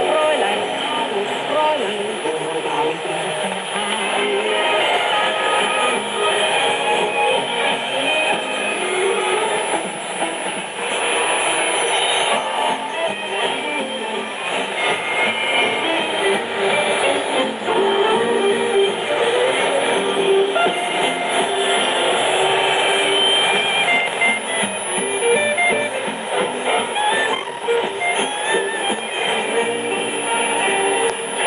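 A song with singing and guitar playing through a Panasonic radio's loudspeaker, received as a shortwave AM broadcast on 6070 kHz. The sound is narrow, with no highs above the voice and guitar.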